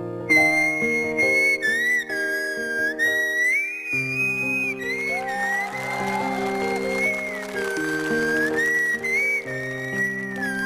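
A carpenter's wood saw played as a musical saw with a violin bow: one high, whistle-like tone that slides and wavers from note to note, carrying a slow melody over held keyboard chords.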